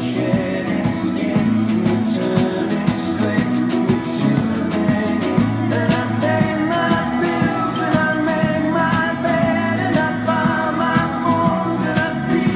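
Live rock band playing outdoors: electric and acoustic guitars over a snare drum keeping a steady beat, with singing.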